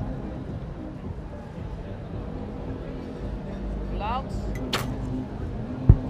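Steady low background hum, then the short snap of a recurve bow being shot about three-quarters of the way through. About a second later comes the sharp thud of the arrow striking the target, the loudest sound here.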